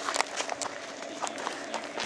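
Footsteps on a dry dirt-and-gravel track, a quick irregular run of scuffs and steps.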